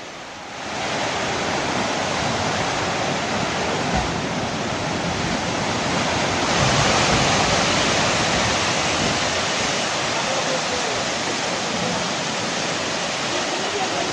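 A landslide: rock, earth and debris pour down a hillside in a continuous rushing noise. It starts about half a second in and grows louder about six and a half seconds in.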